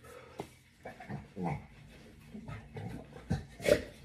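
Pit bull making a few short whining sounds, ending in one short, loud, breathy burst near the end.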